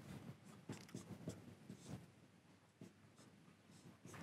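Whiteboard marker writing on a whiteboard: a few faint short strokes in the first two seconds, then near silence.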